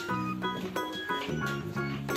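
Background music: a light tune of held notes over a steady low bass line.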